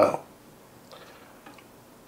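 A few faint clicks and light knocks as the head of a Singer 15-91 sewing machine is tilted back on its hinges in its cabinet, after the tail end of a man's 'uh'.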